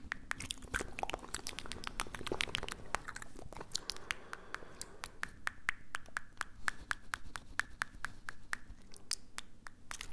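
Close-miked mouth and tongue sounds: a rapid, irregular run of sharp clicks made by the tongue and lips, several a second.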